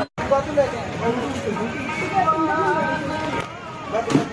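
Indistinct voices with music behind them. The sound drops out completely for a split second at the very start.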